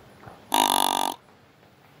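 A Quad Grunter XT deer grunt call blown once: a single short, buzzy grunt lasting a little over half a second, starting about half a second in.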